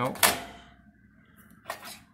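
A single sharp click about a quarter second in, as the plastic pull tab is drawn out of the safe's electronic keypad lock, the step that powers the keypad up.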